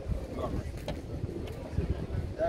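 Low, uneven rumble of outdoor background noise with faint voices, and one sharp click a little under a second in.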